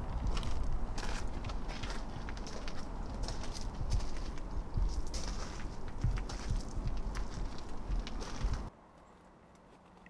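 Footsteps crunching on gravel and bark mulch with wind rumbling on the microphone, irregular crunches over a steady low rumble. The sound cuts off suddenly near the end to a faint outdoor hush.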